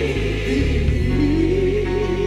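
A woman singing gospel solo, live into a handheld microphone. She holds a note with a wide vibrato, then slides up to a higher held note about a second in, over a low accompaniment.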